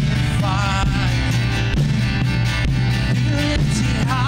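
Live worship band playing a song led by acoustic guitar, with a steady bass line and a sung vocal line with vibrato starting about half a second in.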